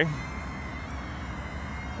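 Steady high-pitched whine of a small toy quadcopter's motors and propellers in flight (the Kai Deng K130 egg drone), over a low steady rumble.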